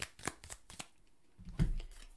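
Tarot cards being shuffled by hand: sharp clicks of card edges, about four a second, that stop just under a second in. A soft low thump follows about a second and a half in.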